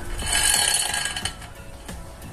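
Motorcycle roller drive chain rattling and clinking as it is pulled by hand around the sprocket, a burst lasting about a second.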